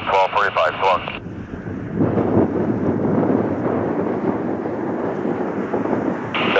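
Twin-engine jet airliner on final approach: a steady rumble of its engines that swells about two seconds in and holds.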